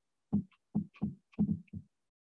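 Paintbrush dabbing oil paint onto a small canvas panel on a tabletop: six short, dull taps in quick, uneven succession.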